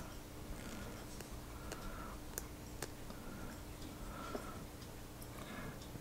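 Faint handling of a plastic e-liquid bottle and its cap being twisted off and set down: a few light, sharp clicks spaced about a second apart over a faint steady hum.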